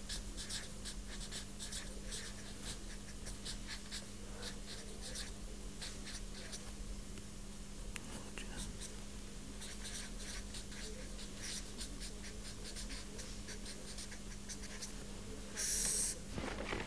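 Someone writing by hand: a long run of short, irregular scratchy strokes, over a steady low hum. A brief louder hiss comes just before the end.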